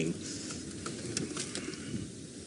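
Open safari vehicle's engine running at low revs as it drives slowly over rough bush ground, a steady low rumble with a few light knocks and rattles.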